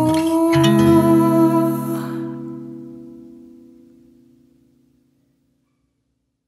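Acoustic guitar closing the song: a last chord is strummed about half a second in and left to ring, fading out over about four seconds.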